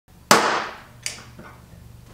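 A loud sharp bang, then a softer one about three quarters of a second later, each ringing out briefly.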